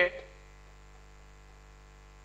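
Steady low electrical mains hum on the recording, faint and unchanging.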